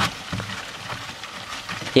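Faint rustling and a few light clicks of cardboard egg-carton flats being handled in a roach tub.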